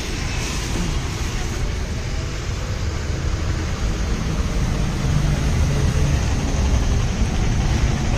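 Steady low background rumble with a noisy hiss above it, getting a little louder about five seconds in.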